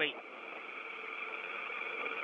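Steady hiss of an open radio communications channel, thin and tinny-sounding, with a faint steady whine, growing slightly louder.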